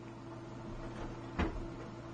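Quiet room tone with a single soft knock about one and a half seconds in.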